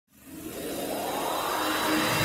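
Rising whoosh sound effect of an animated logo intro: a rush of noise that swells up from silence, growing louder as a faint tone slides upward in pitch.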